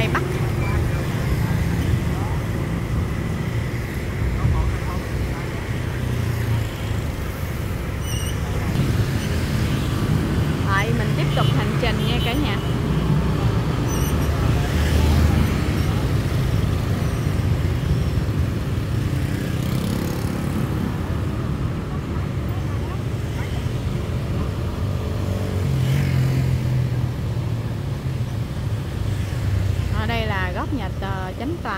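Busy street traffic, mostly motorbikes with some cars: a steady rumble of engines and road noise, with snatches of people's voices now and then.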